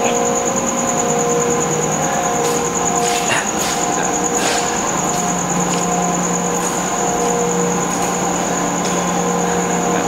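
A steady mechanical drone with a constant high-pitched whine and several held hum tones, unchanging throughout, with a few faint brief knocks or rustles.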